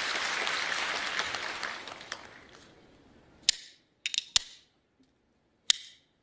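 Audience applause fading out, then a few sharp, separate clacks of hand-held clapper plates, the accompaniment used for Taiping ge ci singing.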